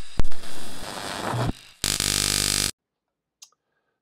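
Logo intro sound effects: a sharp hit with a ringing, noisy decay, then about a second later a loud buzzing burst lasting close to a second that cuts off suddenly, followed by silence.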